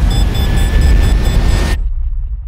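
Trailer sound-design roar: a loud, noisy rush over a deep rumble. Near the end it cuts off abruptly, leaving a low rumble that fades.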